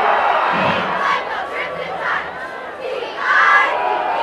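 Football crowd cheering and shouting after a touchdown, many voices at once, with a louder surge of shouts about three and a half seconds in.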